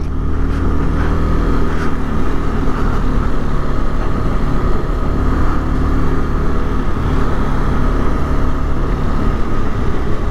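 KTM 250 Adventure single-cylinder engine running steadily at low road speed, heard on board the motorcycle with tyre and wind noise.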